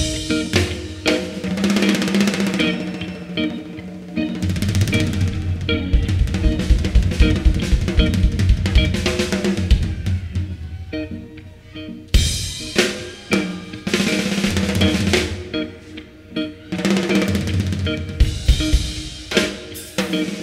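Live jam-band music from the stage: a drum kit with snare and kick drum drives the beat over held keyboard-like tones. The music drops back briefly twice, once about halfway through and again a few seconds later.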